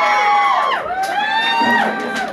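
Concert audience cheering with high-pitched screams and whoops, several voices overlapping in long cries that rise and fall.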